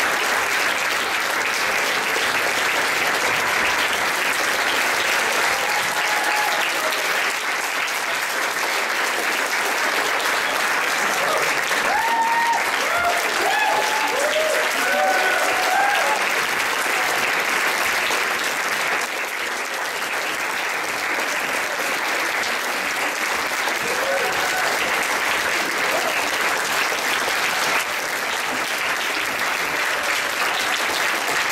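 Audience applauding steadily through a curtain call, with a few voices calling out and cheering about halfway through.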